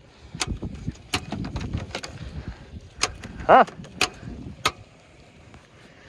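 Five sharp clicks at uneven intervals from a Ford Escape that will not start on a jump pack: the engine does not crank or run. The owners suspect the car, and its starter, are frozen.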